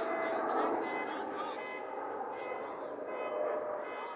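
Distant voices of players and spectators at a soccer game, short calls and shouts carrying across the open field over a steady outdoor background noise.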